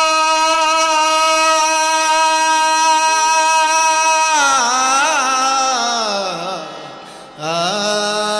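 Male singer's alaap in a Bhimgeet, over harmonium: a long held 'aa' note, then a wavering run that slides down in pitch and fades. A new held note comes in near the end.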